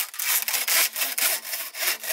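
Hand saw with a bamboo-framed blade cutting through woven bamboo strips in quick, even back-and-forth strokes, about four a second.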